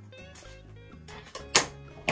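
Background music with sustained notes, and about one and a half seconds in a single loud, sharp snip of garden shears cutting through the bouquet's thick stems.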